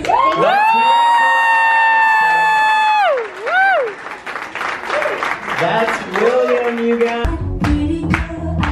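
A boy singing one long held note into a microphone over a PA, then a short note that dips and rises, followed by audience applause and cheering. About seven seconds in, a backing track with a heavy bass beat starts.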